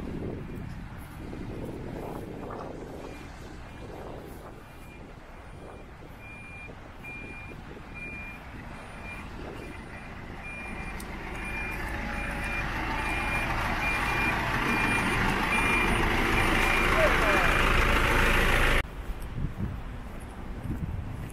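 A vehicle's reversing alarm beeping repeatedly at one high pitch. Over the second half, a rushing noise builds until it is the loudest sound, then cuts off suddenly near the end.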